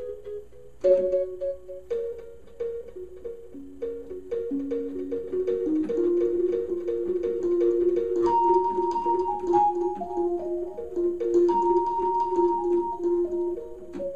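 Alesis QS8 synthesizer playing its '3rdHrmPerc' program, an organ tone with third-harmonic percussion on each key attack. The notes start about a second in and repeat in a steady rhythm, and in the second half a higher line steps downward over them.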